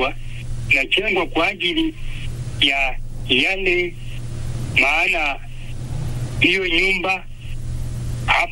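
A man speaking in short phrases, over a steady low hum.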